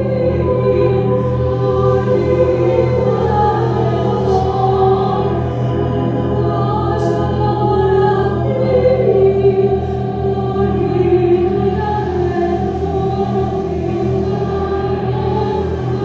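Layered wordless singing: a woman's voice sung into a microphone with other held voices, like a small choir, over a steady low drone.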